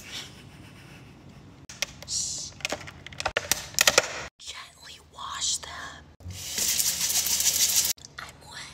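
Kitchen tap running as strawberries are washed: a steady hiss of water for nearly two seconds near the end, cut off suddenly. Before it come soft whispering and a few small clicks and taps of handling.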